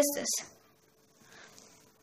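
A voice finishing one word, then near silence with a faint, brief rustle of pen and hand on drawing paper about a second and a half in.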